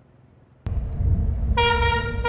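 Drawbridge warning horn starting about one and a half seconds in, a loud steady tone over a low rumble: the signal that the crossing arms are coming down and the bridge is about to rise for a passing ship.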